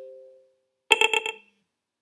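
Smartphone notification alert sounds for incoming SCADA alarm messages. The tail of a two-note chime dies away in the first half-second. About a second in, a quick run of about five short, bright beeps lasts half a second.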